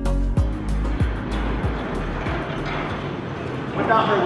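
Background music with a steady thumping beat fades out over the first couple of seconds. As it fades, a steady noise rises, which fits a large sliding hangar door being rolled open.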